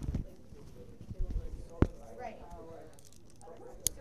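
Faint, murmured talking among people in a room, broken by a few sharp knocks. The loudest is a single knock a little before two seconds in, and a short high click comes near the end.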